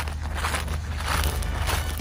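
Wind rumbling on the microphone, with faint crunching footsteps on dry wheat stubble.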